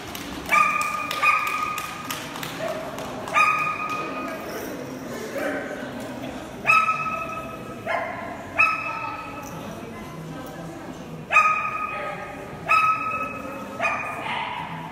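A dog barking repeatedly, about nine single loud barks spaced a second or two apart.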